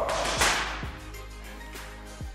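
A boxing glove punch lands on a heavy bag with one sharp slap about half a second in, over background music with a steady beat.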